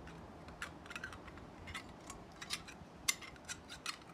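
Small stainless-steel adaptor parts being handled: scattered faint clicks and light scrapes of metal as a silicone washer is fitted onto the threaded coupler, the sharpest click about three seconds in.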